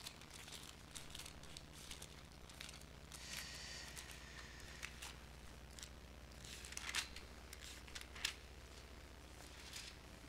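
Faint rustle of thin Bible pages being turned, with a few soft paper clicks, over a low steady room hum.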